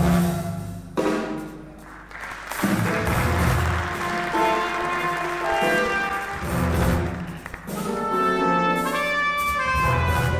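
Big band jazz played live. The full band thins out and drops away about a second in, then comes back about two and a half seconds in with a trumpet playing out in front of the band.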